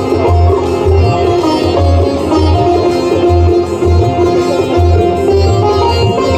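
Instrumental passage of a ghazal: tabla playing a steady rhythm, with deep bass-drum strokes about twice a second, under a keyboard melody.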